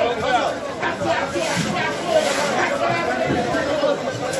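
Several people talking at once in a close crowd, voices overlapping steadily throughout.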